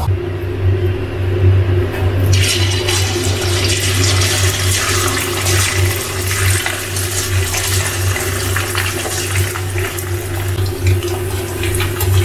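Flour-coated chicken pieces sizzling as they fry in hot oil in a wok. The sizzle starts about two seconds in and keeps up steadily over a low steady hum.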